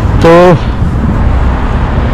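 Steady low road-traffic noise from cars passing through a busy street intersection.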